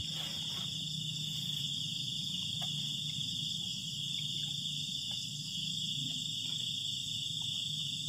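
Night insect chorus, crickets trilling steadily and high-pitched, over a low steady hum, with a few faint soft clicks scattered through.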